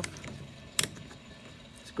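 A handheld digital multimeter being switched off: one sharp click of its switch a little under a second in.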